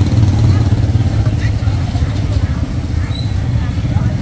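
Motor scooter engine running close by with a fast, even low pulse, easing off slightly after the first second or so.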